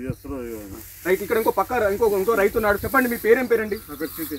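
A man speaking loudly and continuously, with a faint steady high hiss underneath.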